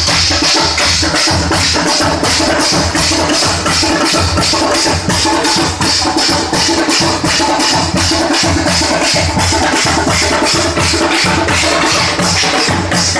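Loud Teenmaar music: a fast, driving drum beat of about five strokes a second that keeps up without a break.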